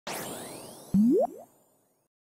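Cartoon sound effect for a logo animation: a sparkling shimmer with high tones sliding in, then a loud rising boing about a second in.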